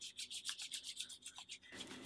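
Palms rubbing together to spread a creamy hair color wax: a fast run of faint, short rubbing strokes that stops shortly before the end.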